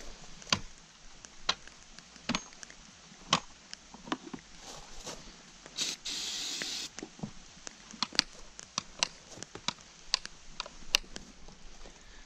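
Scattered clicks and light knocks of parts and tools being handled, with one spray from an aerosol can, a hiss about a second long, about halfway through.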